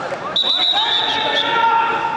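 Several people shouting long drawn-out calls that overlap, starting about a third of a second in, with a few sharp slaps or thuds on the wrestling mat.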